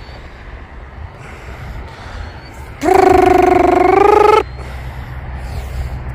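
A man's voice making a long rolled 'prrrr' trill, held for about a second and a half a little after midway, over a steady low rumble of wind on the microphone.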